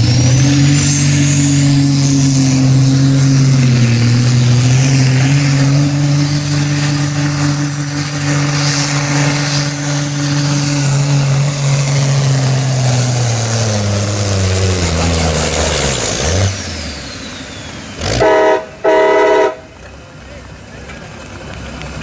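Diesel truck engine at full power hauling a weight-transfer pulling sled, a loud steady run with a high whine that rises as the pull starts. About 15 seconds in the engine winds down and the whine falls away. Near the end come two short, loud horn blasts.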